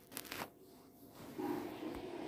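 A brief rustle of handling noise in the first half second, then faint, indistinct background murmur.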